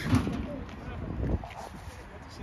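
Brief snatches of speech over steady outdoor background noise, with a few low knocks of handling or wind on the microphone.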